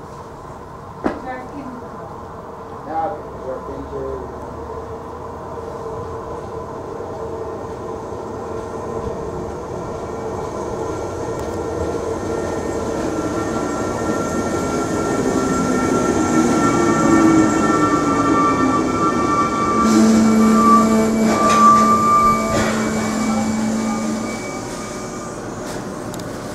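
NS Sprinter (SGMm) electric multiple unit arriving and slowing to a stop. Its running noise grows steadily louder, and a whine falls in pitch as it slows. Near the end a steady hum and a high squeal sound for a few seconds, then fall away as the train halts.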